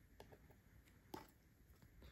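Near silence with a few faint clicks of hard plastic graded-card slabs being handled and knocking together, the loudest a little over a second in.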